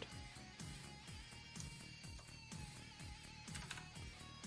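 Quiet background music with a regular rhythm of notes that die away over held tones.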